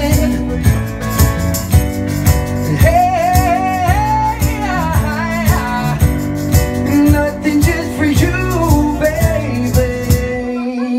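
Live pop band playing with a steady beat and guitar, a male lead singer holding long, bending vocal notes over it.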